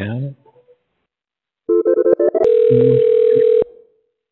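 Telephone dial tone on a phone line: after a short choppy run of tones and clicks, one steady tone sounds for about a second and cuts off suddenly, with a voice talking under it.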